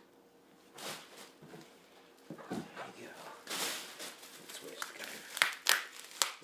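Handling sounds of unboxing: rustling of plastic packing material with scattered knocks, building after a quiet first second, and a few sharp clicks near the end.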